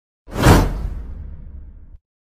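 A whoosh sound effect: a sudden swell about half a second in that fades away over the next second and a half, then cuts off abruptly.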